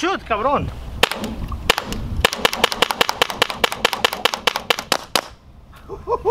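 Compressed-air pepperball launcher firing: a few single shots, then a fast string of about seven shots a second that stops about five seconds in.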